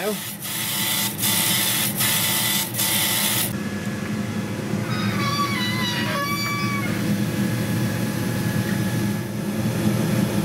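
Chinese CO2 laser cutter grayscale-engraving plywood, its head scanning back and forth. A loud hiss comes with a short knock about every three-quarters of a second as the head reverses at each end of a line. After about three and a half seconds the hiss drops away to a steady machine hum, and in the middle the stepper motors whine in short tones that jump in pitch as the head moves.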